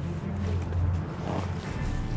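Wind and choppy water around a small fishing boat on rough lake water, with a low steady hum that drops away near the end.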